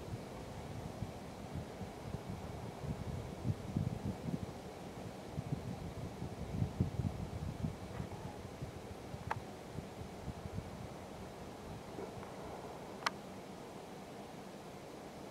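Low rumbling wind buffeting the camera microphone, rising and falling in gusts, with two short sharp clicks late on.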